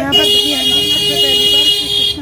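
Auto-rickshaw horn sounding one steady, high-pitched blast lasting nearly two seconds.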